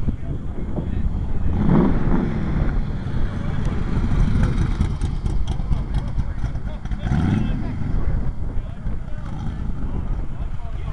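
Shelby Cobra roadster's V8 engine running at low revs, a steady low exhaust rumble, with people's voices over it.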